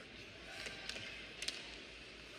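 Faint ice-rink ambience with a few sharp clacks of hockey sticks and puck on the ice as a faceoff is taken, the loudest pair about one and a half seconds in.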